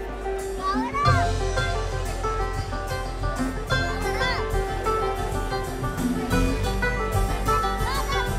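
Live bluegrass band playing an instrumental passage: picked banjo, mandolin and acoustic guitar over electric bass and drums. Crowd voices, including children's, rise over the music about a second in, around four seconds in and near the end.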